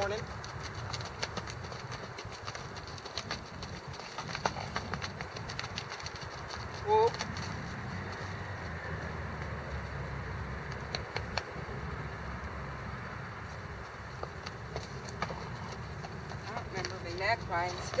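Faint, irregular hoofbeats of a gaited horse moving over frozen, rutted dirt, heard over a steady low rumble, with one short vocal sound about seven seconds in.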